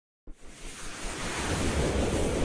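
A whooshing, rushing sound effect with a deep rumble underneath. It starts abruptly about a quarter second in and swells steadily louder, as for an animated logo intro.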